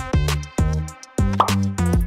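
Electronic background music with a steady beat, and a short rising pop sound effect about one and a half seconds in.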